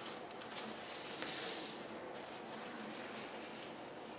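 Faint rustling of a paper towel strip being handled and tucked into clear plastic cups, loudest a second or so in, with a few light clicks.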